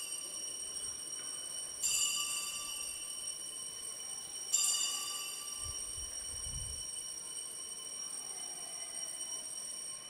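Altar bells rung at the elevation of the chalice after the consecration: a bright, high ring is already sounding, struck again about two seconds in and again about four and a half seconds in, each left to ring out slowly.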